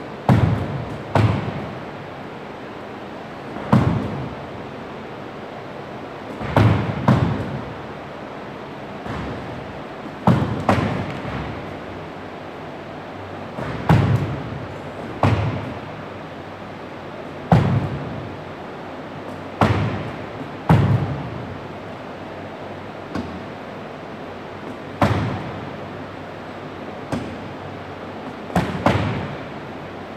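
Medicine balls and basketballs thrown against a gym wall, each landing with a thud or a quick pair of thuds every two or three seconds, echoing in the gym.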